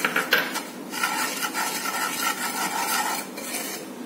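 A spoon stirring dry semolina in a pan: a steady gritty scraping of the grains against the pan, with a few light knocks of the spoon near the start. The semolina is being dry-roasted with no oil or ghee.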